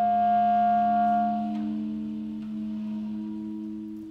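Slow, quiet ensemble music built from long held reed notes from clarinet and saxophone, overlapping in a sustained chord. A higher note fades about a second and a half in as a new lower note enters, and the sound dies away near the end.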